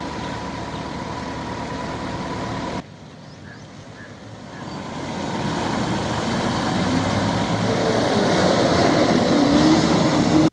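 Passenger bus engines running: a steady sound with a faint high whine at first, then after a sudden drop about three seconds in, a bus engine growing steadily louder as it drives closer.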